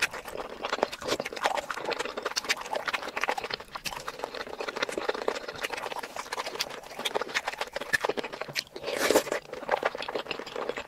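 Close-miked eating sounds: a person chewing with rapid, irregular wet clicks and lip-smacks, with a louder burst near the end.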